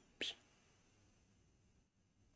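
Near silence: quiet room tone, with one short, faint breathy sound just after the start.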